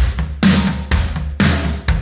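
Addictive Drums 2 virtual drum kit playing a steady beat of kick, snare and cymbals, a hit about every half second, with reverb from the Effects 1 send on the drums.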